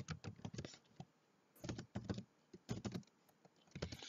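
Computer keyboard typing in four short bursts of keystrokes with brief pauses between them.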